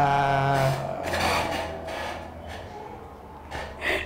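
A man's voice holding one long, steady note that stops less than a second in, followed by quiet room noise with a few short knocks near the end.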